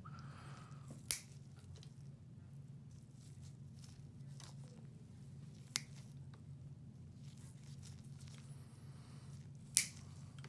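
Toenail nippers snipping a thick, fungus-thickened toenail: three sharp clicks about four seconds apart, over a low steady hum.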